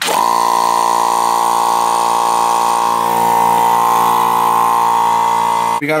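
Electric upright air compressor switched on, its motor and pump starting at once and running loud and steady, building tank pressure for a pneumatic stapler. It stops abruptly near the end.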